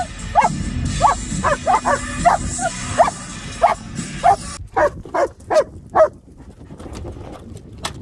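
German shepherd barking in a rapid, excited series of short high yelping barks, about two or three a second, which stops about six seconds in.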